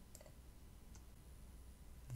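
Near silence with two faint, brief clicks of a computer mouse, one just after the start and one about a second in.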